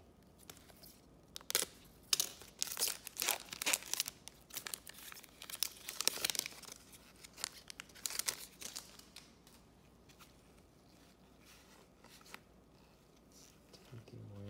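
A trading-card pack wrapper being torn open and crinkled by hand: a run of crackling tears lasting several seconds, then quieter with a few small clicks as the cards come out.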